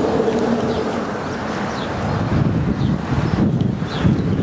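Wind buffeting the camera microphone: a loud rumbling noise that grows stronger in gusts in the second half.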